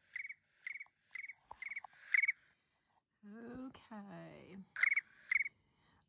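Short chirps repeating evenly, about two a second, like a cricket chirping. They break off midway while a lower call falls in pitch like a croak, then resume near the end.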